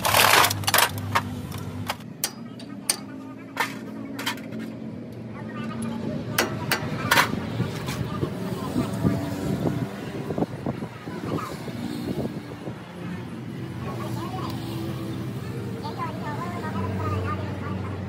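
Sharp metallic clicks and knocks from hands working on a truck's rear wheel hub, several in the first seven seconds and then scattered, over a steady low background hum with indistinct background voices.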